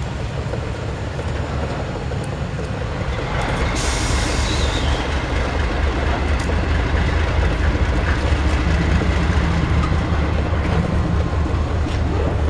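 Freight train rolling slowly past: a steady low diesel locomotive rumble under the clatter of the freight cars' wheels on the rails. The wheel and rail noise comes in about four seconds in and grows a little louder.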